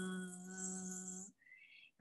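A woman's voice imitating a bee's buzz: one steady, held "bzzz" that stops a little over a second in.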